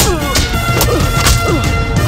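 Film punch sound effects: a rapid series of sharp, heavy hits about half a second apart, over dramatic background music with a steady reedy wind-instrument drone.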